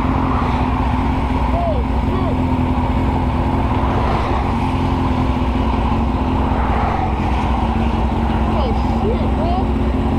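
Motorcycle engine idling steadily at a standstill, with a constant low hum.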